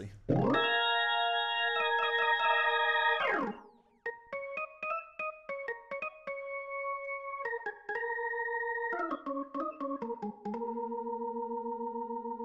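Sampled Hammond B2–B3 hybrid organ heard through a real Leslie speaker, played live. A held chord starts plain, then takes on the Leslie vibrato partway through and drops sharply in pitch before stopping. After a short break comes a run of changing chords with clicks at the note changes.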